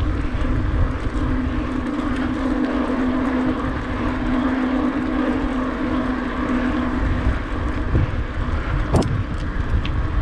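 Bicycle riding along a tarmac path: tyre rumble and wind on the microphone. A steady low hum runs through most of it and stops about seven and a half seconds in, and there are a couple of short knocks near the end.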